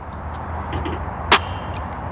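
Pickup tailgate swinging down open and stopping with a single metallic clang about a second and a half in, with a brief high ringing after it.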